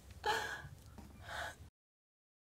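Two short, breathy vocal sounds from a person, such as a gasp or a short laugh, one early and one after about a second. The sound then cuts off abruptly to complete silence.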